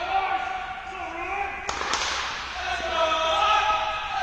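Tennis ball bounced on a hard indoor court, then one sharp racket-on-ball hit a little under two seconds in: the serve. People talk in the background.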